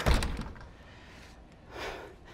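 A glass patio door in a metal frame pushed shut with a single thunk, clamping a resistance band's door anchor at chest height. A short soft hiss follows near the end.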